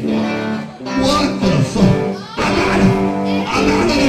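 Live band music with a strummed guitar prominent, its notes held and bending, with a few brief dips in loudness.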